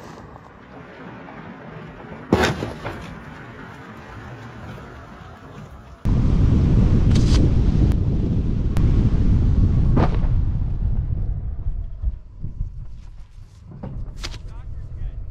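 Wind buffeting the microphone of a camera mounted on the hood of a moving car: a loud, low, rough rumble that starts suddenly about six seconds in and eases off near the end. Earlier there is a single sharp knock about two seconds in.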